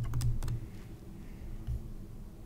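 Computer keyboard keystrokes: a quick run of key clicks at the start, then two more single clicks near the end.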